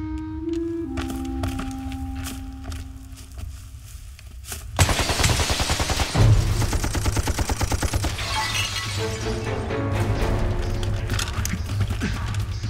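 Film soundtrack: soft held notes of music, then about five seconds in a sudden burst of heavy rapid gunfire breaks out. About a second later comes a loud explosion, and the dense gunfire goes on under the music.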